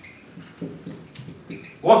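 Dry-erase marker squeaking on a whiteboard while a word is written, a string of brief high-pitched squeaks with each stroke. A man's voice starts near the end.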